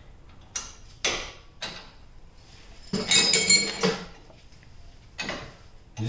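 Steel wrench clinking on the wheel hub's mounting bolts while they are worked loose: a few sharp metallic clicks, a louder, longer rattling clatter about three seconds in, and another click near the end.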